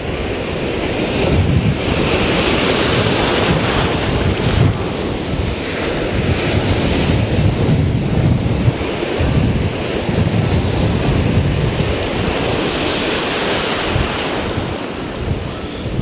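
Ocean surf breaking and washing up the beach, with wind buffeting the microphone in uneven gusts.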